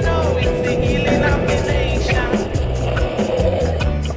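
Background music: a song with a steady beat and a bass line, with one long held note in the first half.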